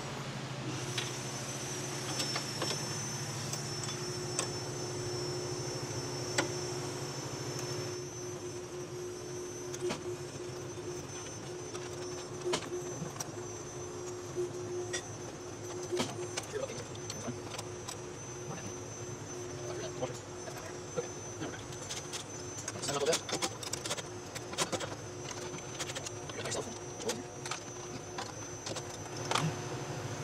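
Light metallic clinks and taps of bolts, nuts and a wrench as a steel bracket is bolted to a tractor's rear frame, more frequent in the last third, over a steady background hum.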